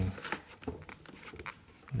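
Pencil drawing along a set square on paper: faint scratching with a few light clicks.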